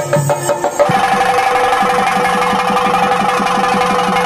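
Chenda drums beaten in a fast, even roll under a steady held tone. About a second in, the music shifts from a slower pattern of separate pitched strokes into this denser roll.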